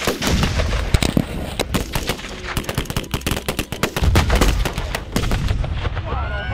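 Rapid, overlapping gunfire from several guns shooting at once. About four seconds in comes a louder, deeper blast as a Tannerite target detonates.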